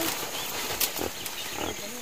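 Piglets grunting in short bursts as they scurry around a pen, with a few sharp clicks among them.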